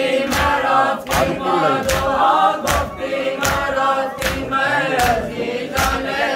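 A crowd of men chanting a Muharram noha together, with a sharp slap landing about every three-quarters of a second: the beat of matam, mourners striking their chests in time with the chant.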